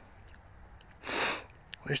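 A single short sniff through the nose about a second in, lasting about half a second.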